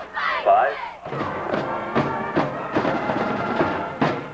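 High school band playing a tune with a steady drum beat, about two beats a second, breaking off at the end.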